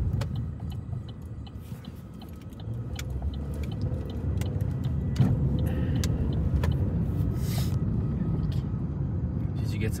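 Road and engine noise of a Chevrolet car heard from inside the cabin while driving: a steady low rumble that grows louder a few seconds in as the car gathers speed, with scattered light clicks and rattles.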